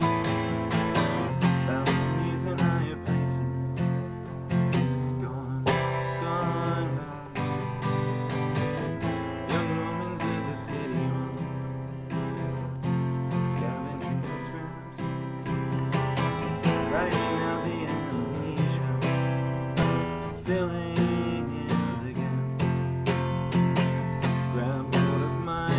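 Acoustic guitar strummed in a steady rhythm, playing chords on its own with no singing.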